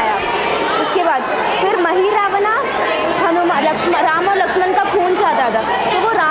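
Speech: a girl talking in Hindi over the chatter of other people in a large hall.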